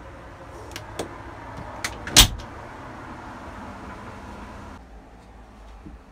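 A few light clicks and one sharp knock about two seconds in, over a steady hum that drops away after about five seconds.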